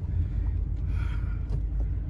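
Steady low rumble of a Dodge Avenger heard from inside its cabin as it drives slowly. The engine is misfiring, with the check-engine light flashing, and is running rough.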